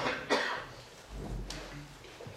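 A person coughing: a short, loud cough about a third of a second in that dies away, followed by a faint sharp click about a second and a half in.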